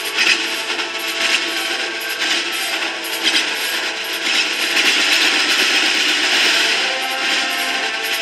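Clarinets in a marching show band playing, half buried under a steady, scratchy hiss that carries more of the sound than the notes do.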